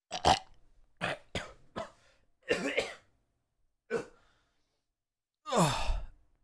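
A man gagging and retching with a finger pushed down his throat: a run of short dry heaves over the first three seconds, another about four seconds in, and a longer retch falling in pitch near the end.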